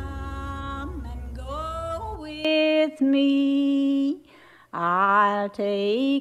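A solo voice singing a slow melody in long, held notes, with a low drone underneath that stops about two and a half seconds in. There is a brief break in the singing after about four seconds.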